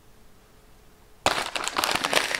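Paper takeout bag being picked up and opened, crinkling and rustling. It starts suddenly a little past halfway in, after a quiet first half.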